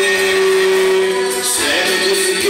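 Young man singing a gospel song into a handheld microphone: one long held note that breaks off about a second and a half in, then the next phrase begins near the end.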